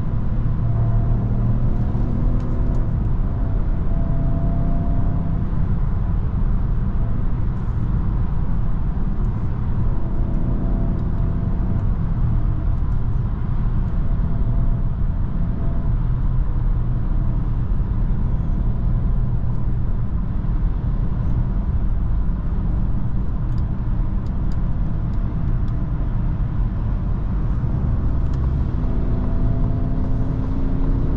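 In-cabin sound of a 2023 Citroën C5 Aircross cruising at motorway speed: steady tyre and road rumble with the hum of its 1.2-litre three-cylinder petrol engine. The engine hum is a little clearer in the first few seconds and again at the end.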